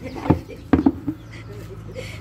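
Pineapple pups knocking against a plastic pot as they are handled and dropped in: one knock about a third of a second in, then two close together just before the middle.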